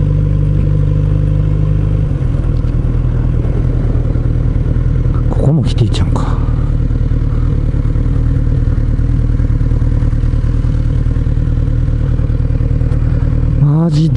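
Kawasaki Z900RS inline-four engine running at low revs as the motorcycle rolls slowly. The note is a little stronger for the first two seconds, then settles. A brief clatter comes about five and a half seconds in.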